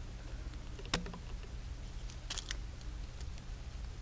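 Screwdriver backing off a Tikka T3 Hunter's action screws half a turn from under the stock: a few small clicks, one about a second in and a quick cluster near the middle, over a low steady hum.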